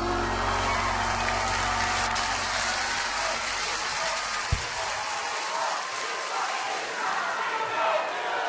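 Studio audience cheering and applauding as the backing music ends, the music cutting off with a low thump about halfway through. A voice starts speaking over the crowd near the end.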